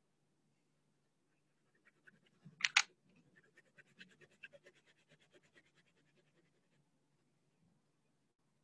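Colored pencil scratching on paper in faint, rapid strokes, with one brief louder noise about two and a half seconds in.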